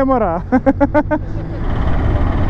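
A voice laughing in short quick bursts for the first second, then the steady rumble of a motorcycle riding in traffic, with its engine and wind noise.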